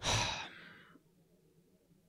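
A man's heavy sigh into a close microphone: one loud exhale right at the start, fading out over about a second, then quiet room tone. It is a sigh of dismay.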